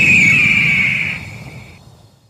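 A bird-of-prey screech sound effect: one long high cry that slides slightly down in pitch and cuts off near the end, over a low rumble that fades out.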